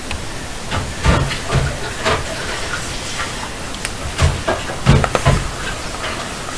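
Afterlight Box ghost-box app playing through its speakers: a steady hiss of noise broken by short chopped bursts of sound, about six of them, the loudest near the end.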